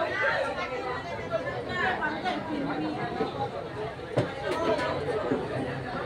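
Many people chattering at once in a large dining hall, overlapping voices with no single speaker standing out. One sharp knock cuts through about four seconds in.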